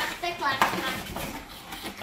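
A cardboard toy box being handled and a plastic toy clock slid out of it: rustling, scraping and light knocks, with a voice over the first part.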